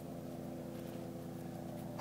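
A steady low mechanical hum made of several even tones, unchanging throughout.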